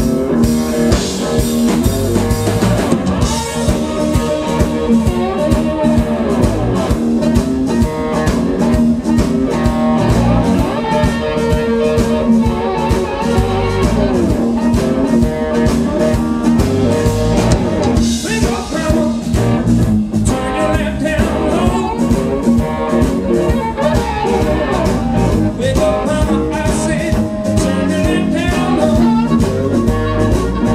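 Live electric blues band playing an instrumental passage: a lap steel guitar played with a slide, its notes gliding up and down in pitch, over electric bass and a drum kit.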